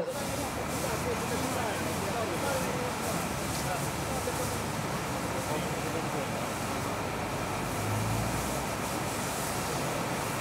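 Steady on-scene noise at a house fire: a motor running and a fire hose spraying water, with faint voices in the background.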